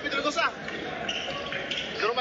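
Basketball game sounds: voices calling out over background crowd noise, with a basketball bouncing on the court.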